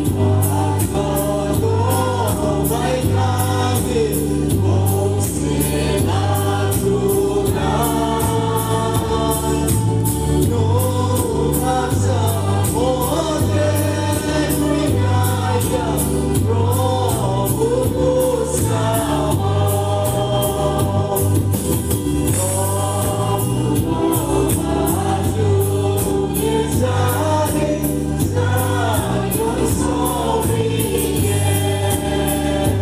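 Mixed choir of men and women singing a gospel song into microphones, over an instrumental accompaniment with a steady bass line and beat.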